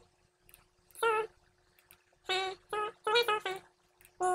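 Sped-up speech from fast-forwarded playback: a voice turned into a handful of short, squeaky, high-pitched syllables with quiet gaps between them, over a faint steady hum.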